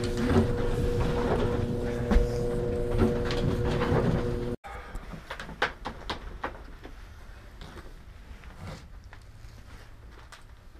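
Steady machine hum with two steady tones over a low rumble, cutting off abruptly after about four and a half seconds. After it, a quieter room with scattered light knocks and clicks.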